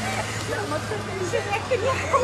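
Steady low hum of an idling vehicle engine under the indistinct voices of several people talking at once.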